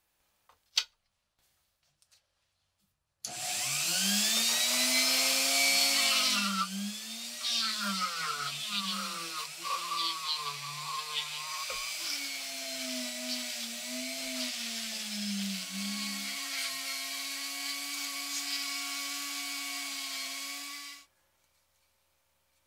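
A handheld rotary tool with a small abrasive polishing wheel spins up a few seconds in and polishes a small metal toy wheel hub held in pliers. Its whine dips and wavers as the wheel is pressed against the part, then steadies and cuts off abruptly near the end. A light click comes about a second in.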